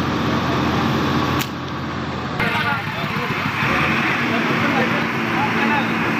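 Motorcycle engines running at a petrol pump, with people talking in the background; a steady engine hum sets in about two-thirds of the way through.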